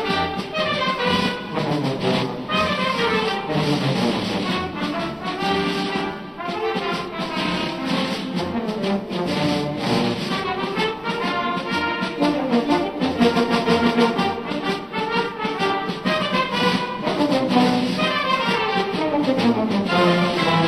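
A march played by brass instruments at a steady pace, with a run of notes falling in pitch near the end.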